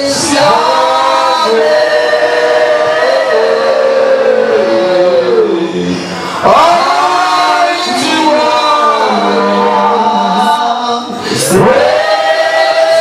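A man singing a gospel song into a handheld microphone, in long held notes whose phrases fall in pitch at the end, with short breaks for breath about six and eleven seconds in.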